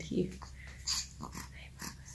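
A baby's brief soft grunt followed by faint breathy snuffles, over a low steady room hum.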